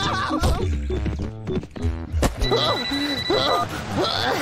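Animated-cartoon soundtrack: music under a string of short, gliding, whinny-like cries, with a fast buzzing rattle about a second in.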